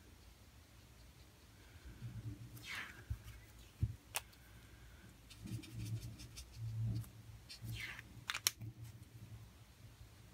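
Faint handling noise from colouring with a brush marker and a water brush on paper: soft bumps on the desk, a couple of brief swishing strokes, and a few sharp clicks of the pens, one about four seconds in and two close together near the end.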